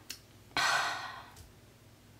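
A woman's sigh: one long breath out, lasting under a second, as she chokes up and holds back tears.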